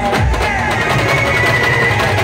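Live village band party music: large drums beating steadily under a held high melody line.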